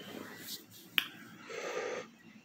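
A single sharp click about a second in, over faint rustling.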